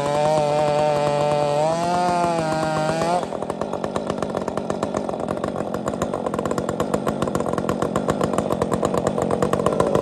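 Two-stroke Husqvarna chainsaws cutting through a large log under load, the engine pitch wavering. About three seconds in, the cut ends and the saws drop suddenly to a rapid, pulsing idle.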